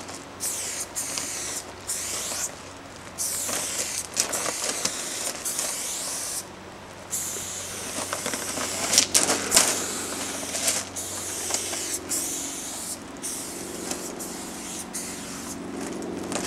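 Aerosol spray paint can with a fat cap spraying silver paint onto a steel tank car, hissing in long bursts broken by short pauses as the nozzle is pressed and released.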